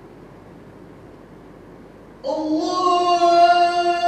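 Low steady hiss, then about two seconds in a loud solo singing voice starts, holding one long steady note.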